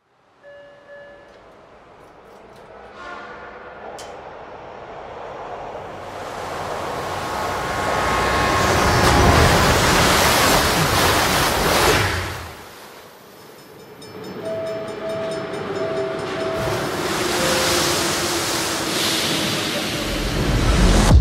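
Animated film trailer soundtrack with a speeding train's rushing noise. It builds to a loud peak and cuts off suddenly about twelve seconds in. A quieter train rumble follows, with a short run of four even tone notes and then a lower one.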